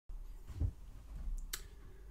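Faint room noise with a low thump about a third of the way in, then a single sharp computer mouse click about three-quarters of the way through.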